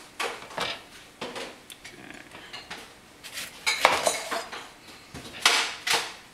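Chef's knife cutting lemons on a plastic cutting board: a series of sharp knocks as the blade hits the board, mixed with clinks of kitchen utensils being handled, loudest about four seconds in and again near the end.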